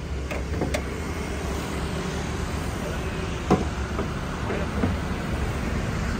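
Pickup's 3.2-litre diesel engine idling steadily and smoothly, with a single knock about three and a half seconds in as the bonnet is raised.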